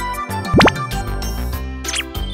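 Light, cheerful children's background music with a cartoon sound effect: a quick upward-sliding 'bloop' about half a second in, and short high slides near the end.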